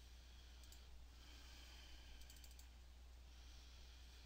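Near silence with a steady low hum, broken by a few soft computer clicks: one about two-thirds of a second in and a quick run of several clicks around two and a half seconds in.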